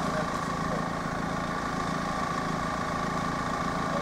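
AŽD 71 level-crossing warning signal's classic electric bell ringing steadily while the barriers are down, with a waiting car's engine idling underneath.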